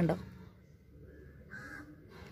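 A woman's voice breaks off at the start, then quiet outdoor background with a faint bird call starting about one and a half seconds in.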